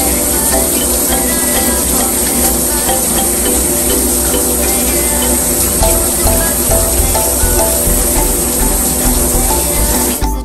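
Background music with a steady beat over the even hiss of running tap water.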